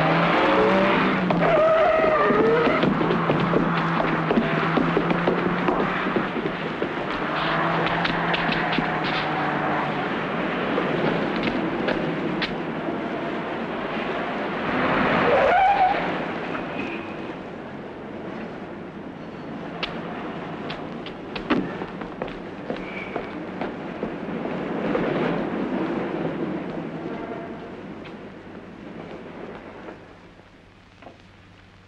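Car engines revving up as cars pull away and drive off at speed, with a tyre squeal about halfway through. The sound gradually fades near the end.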